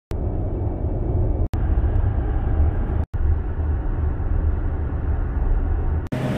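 Steady low road and wind rumble of an electric car driving at highway speed, with no engine note, cut off briefly twice, about a second and a half and three seconds in.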